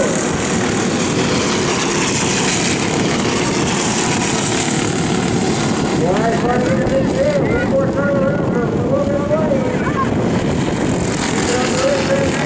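Racing kart engine running under a steady rush of noise, its pitch rising and falling through the second half.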